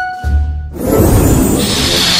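Added magic-spell sound effect: a whooshing swell that builds up about a second in and stays loud, over background music.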